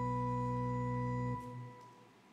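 Organ holding a final sustained chord that is released about one and a half seconds in, its sound dying away in the room's reverberation to near silence.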